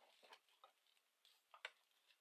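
Near silence with a few faint crinkles and ticks of tissue-paper wrapping being handled and pulled away; the loudest is a pair of clicks about one and a half seconds in.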